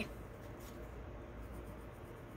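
Faint scratching of a graphite pencil drawing short strokes on a sheet of paper.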